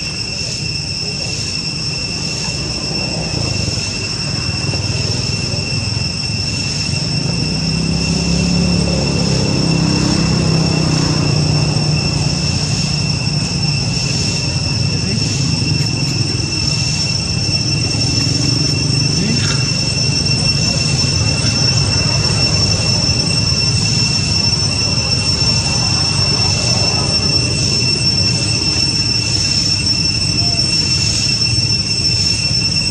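Cicadas droning steadily at one shrill high pitch, with a faint higher tone above it and a slight regular pulse. A low rumble swells in under it about a third of the way in and carries on.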